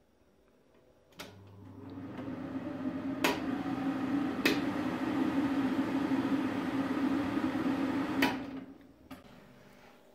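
Kitchen cooker hood's extractor fan switched on with a push-button click, spinning up into a steady hum. Two more button clicks come while it runs. Another click about eight seconds in switches it off and it winds down.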